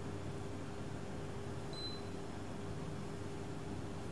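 Steady low hum and hiss of room tone, with no speech. A brief faint high beep sounds about two seconds in.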